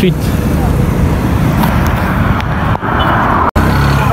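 Road traffic on a busy main road: motor vehicles passing close by with a continuous low rumble, and one passing vehicle swells louder about three seconds in. The sound cuts out for an instant just after that.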